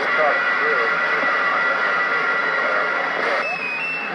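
Galaxy CB radio receiving on channel 28: steady static hiss with a faint, barely readable distant voice buried in it, the sign of a weak long-distance skip signal. A thin steady whistle runs through most of it, and the noise changes abruptly near the end.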